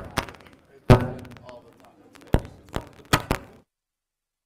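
A faulty wireless microphone producing sharp thuds and knocks: one at the start, a heavy one about a second in and three more near the end. Then the audio cuts out completely as the microphone goes dead.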